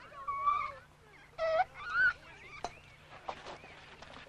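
A young child crying in short, high, wavering wails, the loudest about a second and a half in, followed by a few faint ticks.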